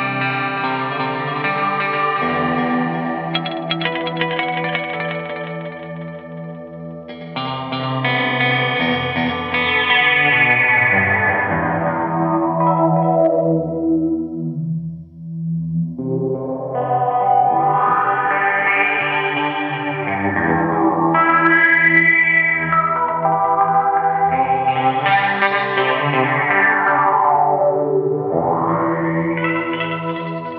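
Gibson Les Paul electric guitar playing chords through the EarthQuaker Devices × Death by Audio Time Shadows delay. Its filter control is turned by hand, so the delayed chords sweep down and then up and down again several times, like manual flanging.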